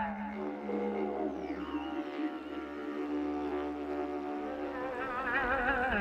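Didgeridoo played live: a low, continuous drone whose overtones shift and sweep, with a wavering higher melodic line over it that grows stronger near the end.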